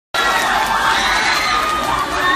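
A crowd of fans screaming and cheering: many high voices overlapping in a steady din that starts abruptly.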